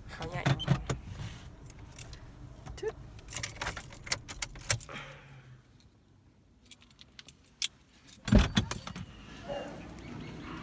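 Keys jangling with small clicks and rattles inside a parked car, then one loud thump about eight seconds in.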